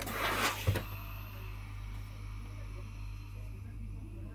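Clothes iron pushed across a folded cotton binding strip on a pressing board, a swishing noise for under a second that ends in a knock about three quarters of a second in. After that only a low steady hum remains.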